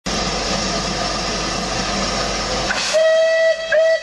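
Steam locomotive 35028 Clan Line, a rebuilt Merchant Navy class: a steady hiss of escaping steam, then, about three seconds in, two short blasts on its steam whistle.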